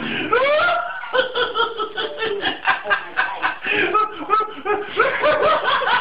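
A person laughing hard and long, in a run of quick high-pitched laugh pulses, about four or five a second.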